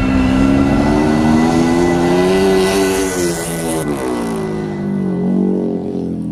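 Indian Scout FTR750 dirt-track racer's V-twin engine revving hard: the note climbs for about two and a half seconds, drops off, then dips and climbs again near the end.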